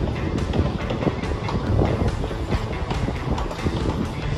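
Wind buffeting the microphone, a loud, irregular low rumble.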